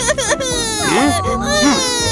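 A cartoon child character crying: drawn-out wailing sobs, with a falling wail about a second in and then a long held one, over soft background music.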